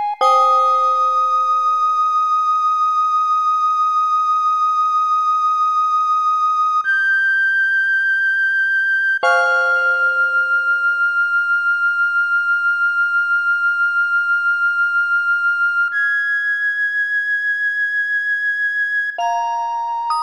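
A sopranino recorder holds long high notes with a steady wavering vibrato over a celesta. The celesta strikes chords that ring away just after the start and again about halfway through, and the recorder's note changes pitch a few times. Near the end a quicker run of notes begins.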